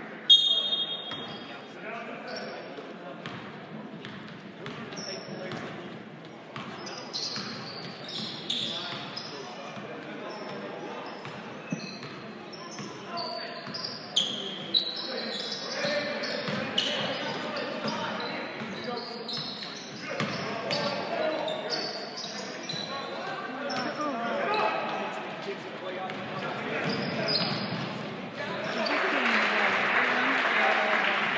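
Basketball game sounds echoing in a gym: a basketball bouncing, sneakers squeaking on the hardwood, and players', coaches' and spectators' voices. A short whistle sounds just after the start, and the crowd noise swells near the end.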